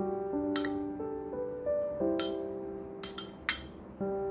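Metal spoon clinking against a ceramic bowl while stirring chopped dried figs: about five sharp clinks, the last three close together near the end, over soft piano music.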